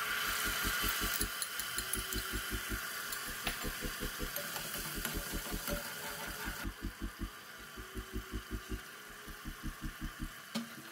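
Sizzling as red sauce is poured into a pot of hot oil, loud at first and dying down about six and a half seconds in, over background music with a steady pulsing bass beat.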